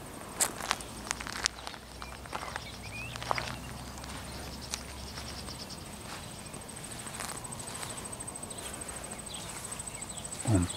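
Crickets chirping in the grass, a steady rapid high trill. A few soft steps and handling clicks come in the first couple of seconds.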